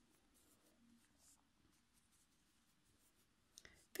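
Near silence, with faint scratchy rubbing of yarn being worked with a metal crochet hook.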